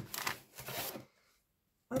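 Plastic rustling as a strip of small sealed plastic bags of diamond-painting drills is handled and set down: two short, soft rustles in the first second.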